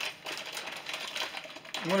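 Foil-lined snack-chip bag being torn open by hand: a rapid, irregular run of crinkles and crackles.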